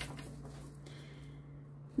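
Faint rustle of a deck of tarot cards being shuffled by hand, over a low steady hum.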